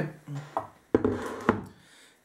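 Handling noise at a fly-tying bench: two sharp knocks about half a second apart, a second in, as the tying vise is moved out of the way.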